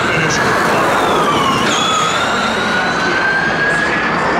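Formula E Gen 2 car's electric drivetrain whining as it drives off down the street, the siren-like pitch dipping and then rising steadily.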